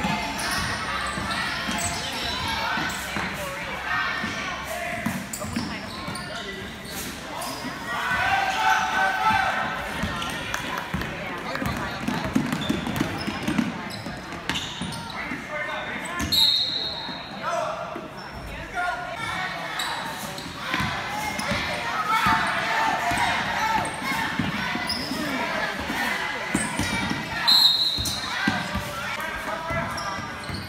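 A basketball bouncing and dribbling on a hardwood gym floor during play, echoing in a large gym, with players' and spectators' voices throughout. Two brief high-pitched tones cut through, about sixteen seconds in and again near the end.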